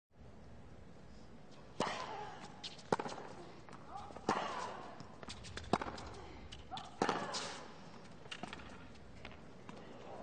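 Tennis rally: five sharp racquet-on-ball strikes, about one every second and a quarter, with smaller taps between them. Every second strike carries a short grunt from the player hitting it.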